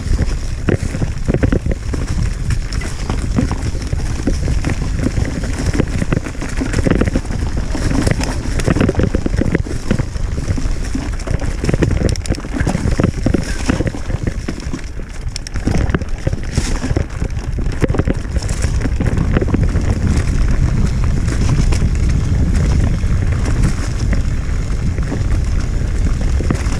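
Mountain bike ridden fast along a leaf-strewn dirt trail: tyres rumbling over the ground and frequent rattles and knocks from the bike, under a steady low rumble of wind on the microphone.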